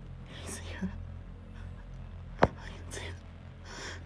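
Hushed whispering in a small enclosed space, soft and breathy, with one sharp click about halfway through.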